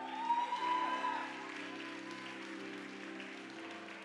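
Soft background music of held keyboard chords, with a voice calling out briefly near the start and light applause.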